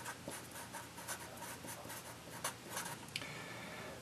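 Marker pen writing a word on paper: a run of faint, irregular scratching strokes.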